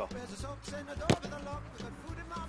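Background music with a steady beat, and one sharp thud about a second in as a football is kicked hard.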